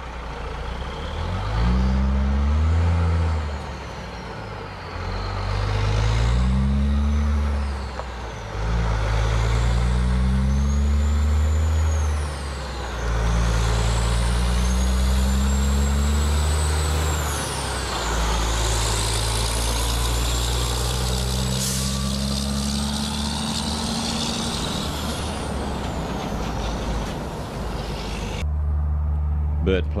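Caterpillar-engined road train prime mover hauling three trailers, accelerating up through the gears. The engine note climbs in five steps and drops briefly at each gear change. As the rig goes by, a high whine of tyres and running gear falls away.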